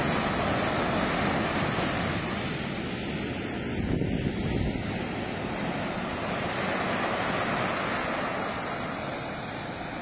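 Surf breaking on a sandy beach, a steady wash of waves with wind buffeting the microphone; the sound swells louder for a moment about four seconds in.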